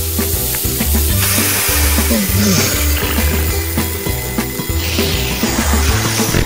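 Bacon sizzling in a frying pan, getting fuller about a second in, over background music.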